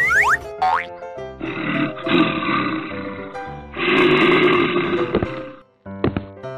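Bouncy children's cartoon music with a quick rising whistle effect at the start, then two long animal roars, a cartoon bear's sound effect, each lasting about two seconds.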